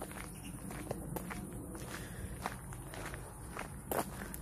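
Footsteps of a person walking on a paved lane, soft and irregular, with a sharper click just before the end.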